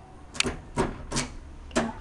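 Four sharp knocks or taps, the first three evenly spaced a little under half a second apart and the last a little later, each with a short low ring.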